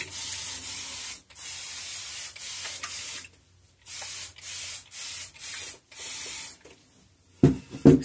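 Fine-mist spray bottle of water misting a curly synthetic wig: a series of short hissing sprays, about seven in all, each under a second, with a brief pause in the middle.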